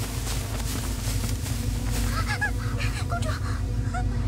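A flurry of short honking calls, bird-like, about two seconds in and lasting a second and a half, over a steady low rumble from the soundtrack.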